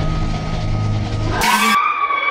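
Sound-effect break inside a hip-hop track, with the beat dropped out: a low steady drone, then a sudden burst about one and a half seconds in, followed by a squealing tone that trails off.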